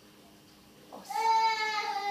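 A single long, high, drawn-out cry, steady and slightly falling in pitch, starting about a second in after a moment of quiet room tone.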